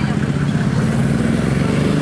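A motor vehicle engine idling, a steady low hum.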